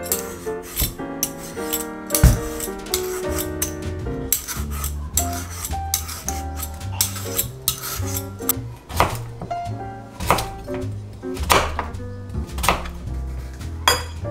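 Background music with a melody and bass line, over repeated quick scraping strokes of a hand vegetable peeler taking the skin off a butternut squash.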